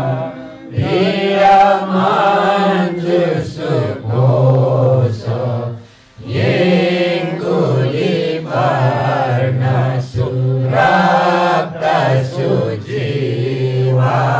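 Group of voices chanting a Buddhist text in unison from their books, partly through microphones, a low held pitch under the melodic line. Short breaks fall between phrases, the clearest about six seconds in.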